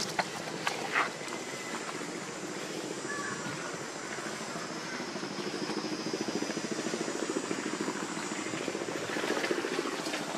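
An engine running steadily, with a few sharp clicks in the first second.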